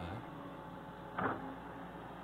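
Steady low hum of a running wheeled excavator's diesel engine and hydraulics, with one short sharp breathy sound a little over a second in.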